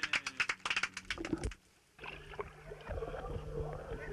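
Rapid clicks and knocks, a brief near-quiet gap about a second and a half in, then a boat's engine humming steadily.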